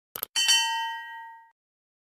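Subscribe-button sound effect: a quick double mouse click, then a single bright bell ding that rings for about a second and fades.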